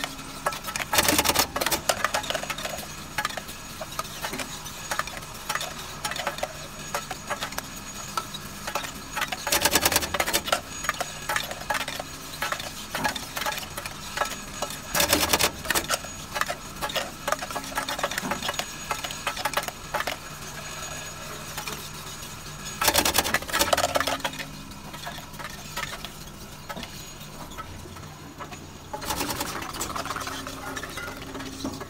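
Automatic gummy bear counting and bottle-filling machine running: a steady motor hum under continuous light rattling of gummies and plastic bottles, with louder bursts of clatter five times.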